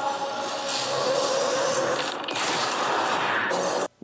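A dense, noisy sound effect from an animated action episode's soundtrack, with no dialogue, that cuts off suddenly just before the end.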